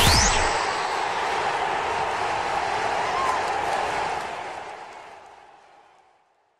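End-card sound effect: a rising whoosh that finishes just after the start, then a steady noisy wash that fades out over the last two seconds.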